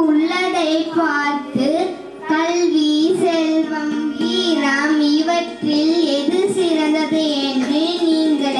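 A young girl singing solo into a handheld microphone, one wavering melodic line in long phrases with short breaks about two seconds in and again past the middle.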